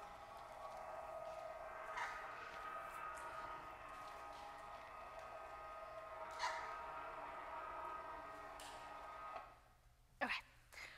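Electric motor of a lowering lecture-hall screen running with a steady hum of several fixed tones, described as kind of loud. There are two brief squeaks along the way, and the hum stops about nine and a half seconds in.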